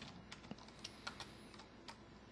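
Faint computer keyboard typing: a handful of separate, unevenly spaced keystrokes.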